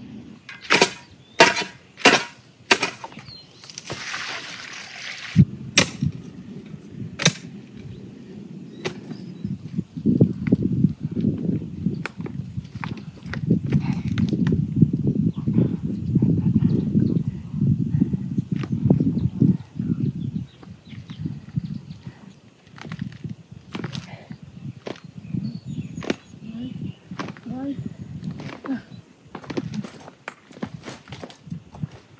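Hand digging tool striking hard, stony ground, four sharp strikes in the first three seconds, then a scraping rasp. This is followed by a long stretch of low, irregular rumbling and rustling with scattered knocks.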